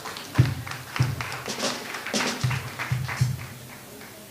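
Hand clapping from the congregation: a short burst of irregular claps for about three and a half seconds, with a few low booming notes under it.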